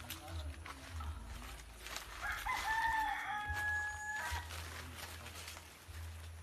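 A rooster crows once, starting about two seconds in and holding for about two seconds.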